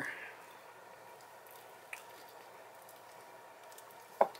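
Faint wet squishing of a sharp knife cutting into the skin and fat of a blanched duck, with one small click about two seconds in.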